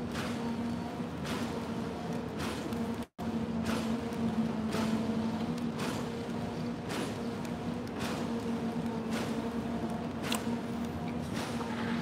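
Faint crunchy chewing, about once a second, of a bite of a battered, deep-fried tamagoyaki and chicken sandwich. Under it runs a steady hum with a few even overtones. The sound cuts out for an instant about three seconds in.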